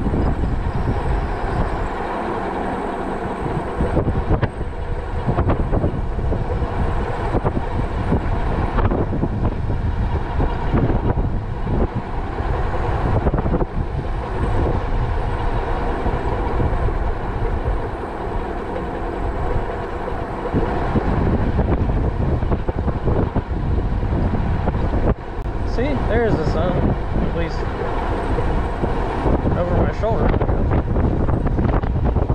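Wind buffeting the microphone on a moving e-bike, a loud, gusting rumble over steady riding noise, with a few brief wavering tones near the end.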